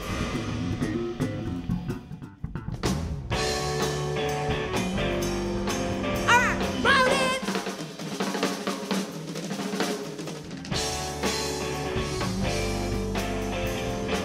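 Live band playing an instrumental passage driven by the drum kit, with guitar and keyboard, breaking off briefly about two seconds in before coming back in.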